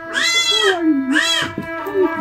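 A goat bleating twice, each call rising and then falling in pitch, the first longer than the second.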